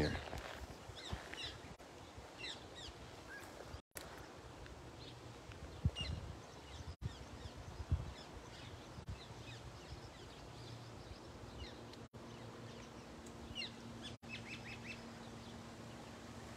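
Birds chirping: short, scattered high calls over faint outdoor background noise, with a couple of soft low thumps midway and a faint steady hum in the last few seconds.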